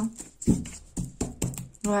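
Cards being handled and laid back down on a cloth-covered table: a handful of short taps and clicks, the strongest about half a second in.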